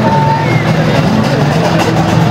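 Loud, steady hubbub of a large crowd in an open-air square, many voices overlapping, with a few short high tones rising out of it.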